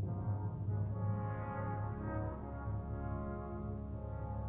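French horn solo playing a slow phrase of several held notes over an orchestra, with a sustained low rumble beneath it.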